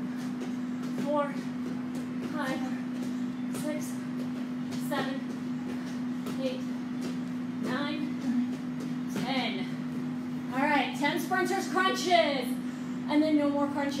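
Short voiced exhales or grunts of exertion, about one every second or so, from people doing a plank-based jumping exercise, over a steady low hum. From about ten seconds in, breathless talking or laughter takes over.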